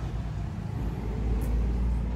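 Low steady rumble with no speech, swelling about a second in.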